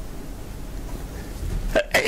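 A short pause in a man's speech, filled with steady low studio background hum. His voice starts again near the end.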